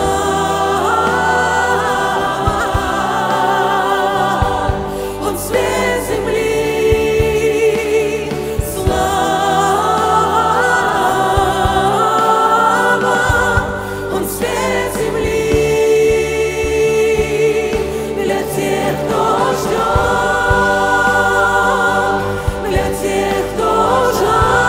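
A female soloist with a mixed choir of men and women singing a Christian Christmas worship song in Russian, in held chords that swell and fall in phrases a few seconds long.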